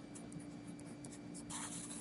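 Pencil writing on paper: a few short, light strokes, then a longer, louder stroke about one and a half seconds in as a line is drawn across the page.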